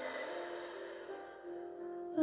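Soft background music with long held notes, under a slow, steady breath out through the mouth during a guided breathing exercise.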